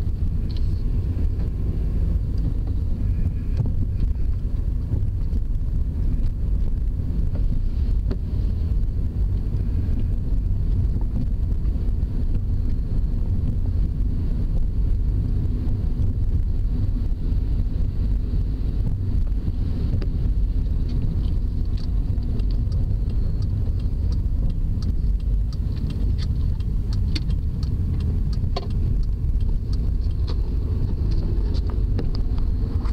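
Steady low rumble of a car's engine and tyres on the road, heard from inside the cabin, with a few faint clicks in the last third.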